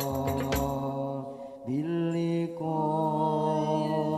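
Male vocal group singing an Arabic devotional song in long held notes, with a few hand-drum strokes in the first half-second before the drums drop out. The voices dip briefly, then slide up into a new held note about two seconds in and step higher shortly after.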